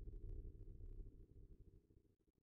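Faint, low rumbling drone from a movie trailer's soundtrack, fading away toward the end.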